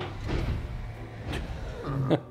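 A car running, heard as a sound effect on a film soundtrack played in a room, with a short sharp knock partway through.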